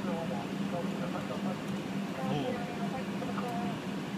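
Steady low hum inside a car cabin, with faint talk over it.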